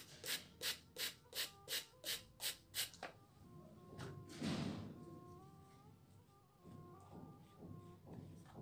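A hand-held trigger spray bottle squirting water onto acrylic paint in a mixing tray: about eight quick sprays, roughly three a second, that stop about three seconds in. Soft background music runs underneath, with a brief noise about halfway through.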